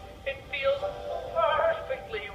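A cartoon cat character's voice laughing in short pitched bursts over background music with held notes.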